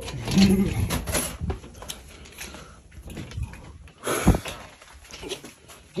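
A man laughing briefly, then rustling handling noise and a single sharp thump about four seconds in.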